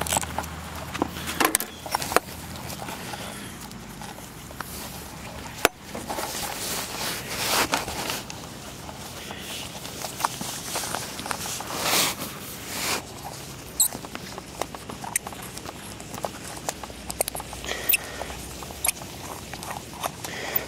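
Hand-work on a small Walbro carburetor: irregular clicks, scrapes and rustles of metal parts and a cloth shop rag as the float-bowl nut is loosened and the bowl taken off. The sharpest click comes about six seconds in.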